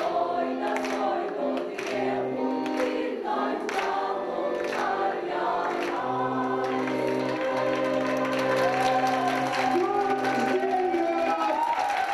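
A group of voices singing a celebratory song together, with clapping along to the beat in the first few seconds.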